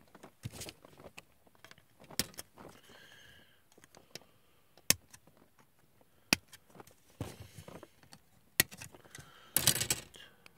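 Plastic model-kit parts being snipped off a plastic sprue with side cutters: several sharp, separate clicks a second or two apart, then a short clatter of plastic near the end.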